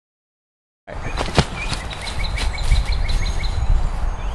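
Silence, then about a second in, woodland ambience begins: wind rumbling on the microphone, a sharp click soon after, and a bird calling a quick run of short chirps, about five a second.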